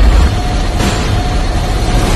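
Fire-blast sound effect of an animated logo intro: a loud, even rushing noise with a deep rumble and a faint held tone.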